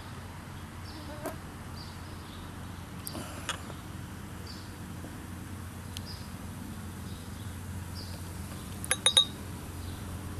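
Beer being poured from a glass bottle into a pint glass, a quiet steady pour, with three quick glassy clinks of bottle against glass near the end.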